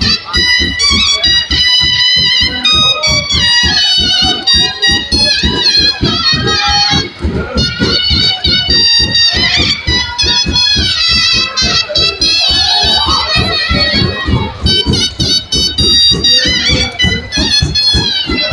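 Live dhamal music: big drums beating a fast, driving rhythm of about five strokes a second, under a high reed-pipe melody that wavers and bends.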